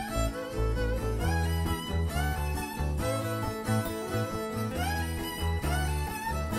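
Instrumental band intro: a fiddle plays the lead melody with sliding notes over acoustic guitar and electric bass.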